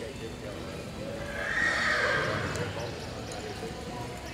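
A horse whinnying once, about a second in, for about a second and a half. It is the loudest sound, over low voices and hoof noise in an arena.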